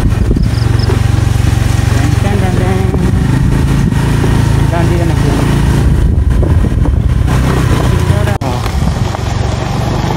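Ride noise on a moving motorcycle: wind buffeting the microphone in a loud, steady low rumble, with the engine running underneath and faint voices. A sharp click comes about eight seconds in, after which the rumble drops slightly.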